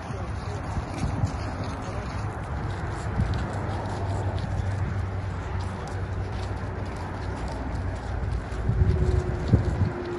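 Crowd chatter and murmur with a steady low hum, broken by scattered dull thumps and knocks that bunch together and get louder about nine seconds in.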